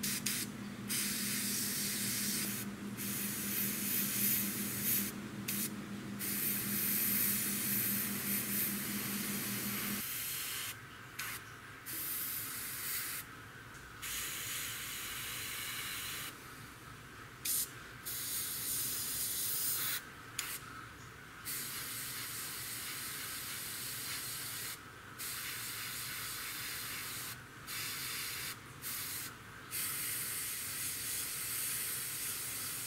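Gravity-feed airbrush spraying paint in repeated bursts of hiss, broken by short gaps. A low hum runs under the first third and cuts off suddenly about ten seconds in.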